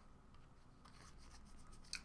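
Near silence with faint rubbing and sliding of trading cards being handled, starting about a second in.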